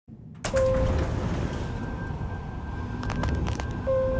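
Elevator chime dinging twice, about three and a half seconds apart, over a steady low rumble, with a few short clicks just before the second ding.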